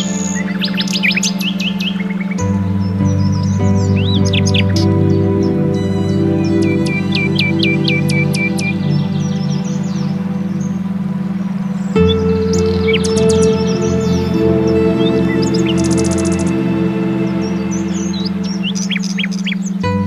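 Ambient meditation music of long held droning tones over a low pulsing tone, shifting to new chords twice, mixed with birdsong: many short chirps and trills throughout.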